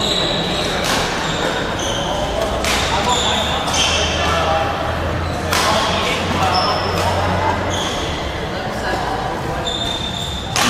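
Badminton play on a hardwood gym floor: sharp racket hits on a shuttlecock every second or two, with many short, high squeaks from court shoes, echoing in the large hall.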